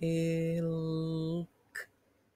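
A woman's voice slowly sounding out the word "milk" for blending, drawing out the "mil" at one steady pitch for about a second and a half, then a short, separate "k" sound.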